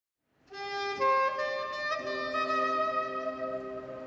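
Live band music starting about half a second in: held chords in a reedy, woodwind-like tone that change at about one and two seconds in.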